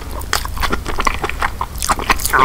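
Chewing of king crab meat: a quick, irregular run of wet mouth clicks and smacks.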